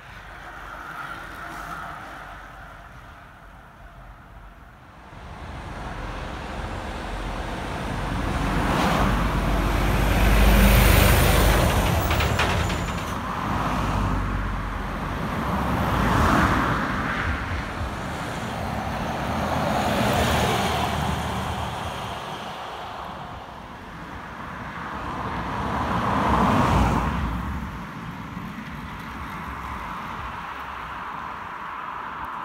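Road traffic passing on a main road: a run of vehicles goes by one after another, each swelling up and fading away, the loudest about ten seconds in with a deep rumble, and further passes at roughly sixteen, twenty and twenty-seven seconds.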